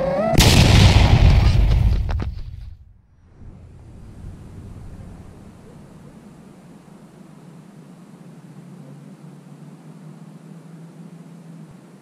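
5-inch FPV quadcopter with Ethix Mr Steele motors flying fast and low, its motors and rushing wind loud on the onboard camera's microphone. About two and a half seconds in, it crashes and the motors cut off. After that only a faint, steady low hum remains.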